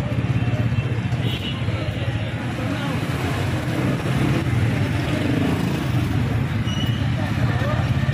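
Steady street traffic noise from cars and motorcycles running close by, mixed with the voices of people on the street.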